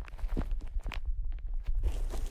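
Bubble wrap crinkling close to a microphone: scattered sharp crackles that thin out about halfway through and pick up again near the end, over a low handling rumble.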